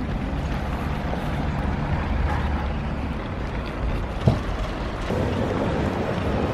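Hard plastic wheels of a child's ride-on toy rolling over pavement, a steady low rumble, with a single knock about four seconds in.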